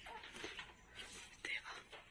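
Faint whispering voices, with a small knock about one and a half seconds in.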